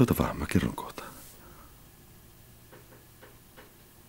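A person's voice in the first second, then quiet with a few faint clicks.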